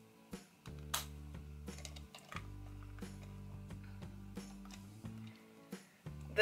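Quiet background music with steady low sustained notes, and a few light clicks of plastic toy compacts being handled.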